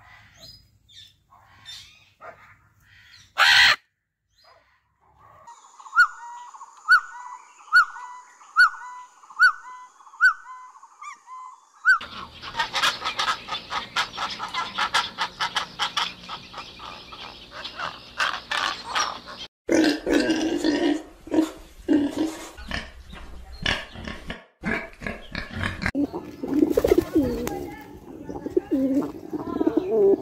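A run of different bird sounds one after another: a single loud squawk a few seconds in, then a chirping call repeated about once a second over a thin high tone, then a dense clamour of many birds, and low cooing of pigeons near the end.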